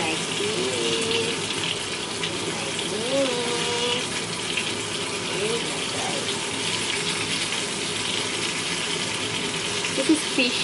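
Floured fillets frying in hot oil in a frying pan: a steady sizzle.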